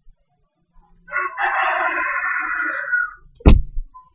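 A loud, drawn-out animal call lasting about two seconds, starting about a second in, then a single sharp thump near the end.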